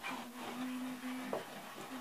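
Chalk rubbing and scratching on a chalkboard wall as a drawing is sketched, with a steady low tone held for about a second near the start and a short tap just after it.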